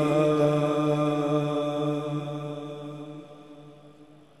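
A steady, held vocal drone from a naat, one unbroken pitched tone with no words. It fades away over the last couple of seconds.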